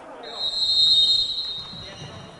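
Referee's whistle in a futsal hall: one long shrill blast of about a second and a half, stopping play.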